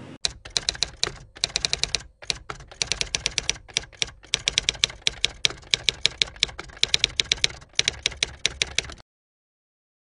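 Rapid typing: quick runs of sharp key clicks, many a second, broken by short pauses, cutting off suddenly about a second before the end.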